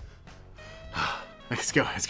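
A man's sharp breath, a short rush of air about a second in, followed by him starting to talk, over faint background music.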